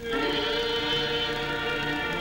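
Choral music: voices holding long, steady chords, with a new chord coming in at the start after a brief lull.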